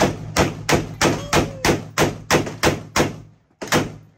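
AR-15 semi-automatic rifle fired in rapid succession, about ten shots at roughly three a second, each with a short echoing tail. After a brief pause, one more shot comes near the end.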